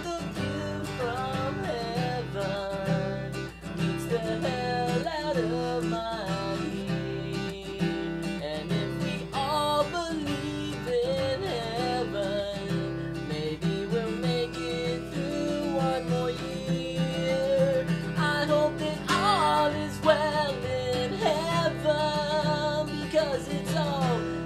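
Acoustic guitar strummed in steady chords, with a man singing over it.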